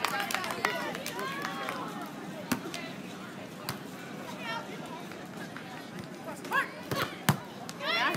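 Scattered voices of players and onlookers calling and chatting around outdoor volleyball courts, with a few sharp smacks; the loudest comes about seven seconds in, as a hand strikes the volleyball to start the rally.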